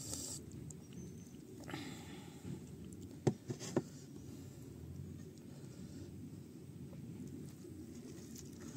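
Faint handling sounds at a meal: two light knocks about three seconds in, a half second apart, as a plastic bowl of curry is set down on the table, over low background noise.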